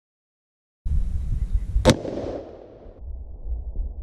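A single shot from a Howa 1500 bolt-action rifle in .243, a sharp crack with a short rumbling tail about two seconds in. Low wind rumble on the microphone runs under it.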